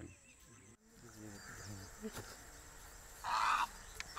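Faint outdoor ambience, then a short harsh animal call about three seconds in.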